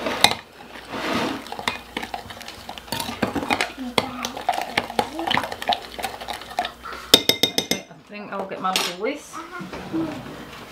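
Spoon clinking against a glass measuring jug as seasoning and cure are stirred into water to dissolve them: irregular clinks and scrapes, with a quick run of clinks about seven seconds in.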